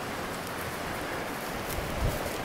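Steady outdoor rushing noise with no distinct events.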